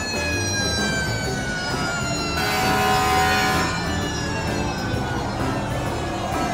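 Fire truck siren winding down in one long, slowly falling wail as the truck drives past. A louder, brighter burst of sound comes in about two and a half seconds in and lasts about a second.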